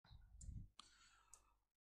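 Very quiet: a few faint sharp clicks spread over about the first second and a half, with a soft breath-like sound near the start.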